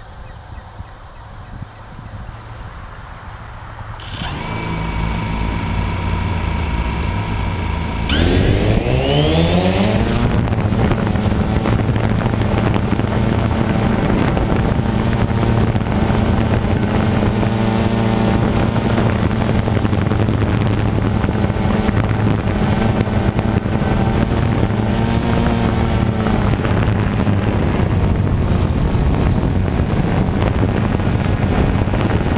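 DJI Phantom 2 quadcopter's four motors and propellers, heard from the drone's own camera. The motors start about four seconds in and run steadily. About eight seconds in they spin up with a rising whine as it lifts off, then settle into a loud, steady buzz as it hovers.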